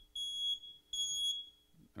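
Handheld electronic alarm beeping: two high-pitched beeps, each under half a second, with a short gap between.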